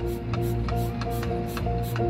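Marching band show music: a steady ticking rhythm of about four clicks a second, each with a short repeated note, over a low sustained tone.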